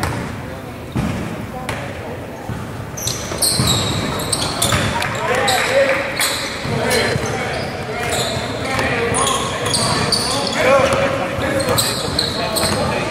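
A basketball bounced on a hardwood gym floor, then from a few seconds in, many short rubber sneaker squeaks on the court as players run, with voices calling out in the echoing gym.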